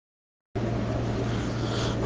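Silence, then about half a second in a steady hiss with a low electrical-sounding hum starts abruptly. This is the background noise of the recording that carries on under the talk.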